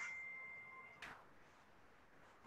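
A single high, bell-like note fading out over about a second, with a faint tick about a second in, then near silence.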